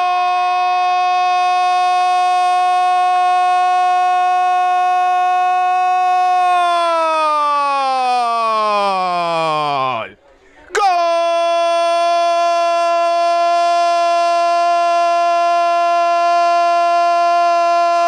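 A football commentator's drawn-out "gol" shout celebrating a goal, held on one high note, then sliding far down in pitch and breaking off about ten seconds in. After a brief gap he shouts a second long "gol" on the same held note.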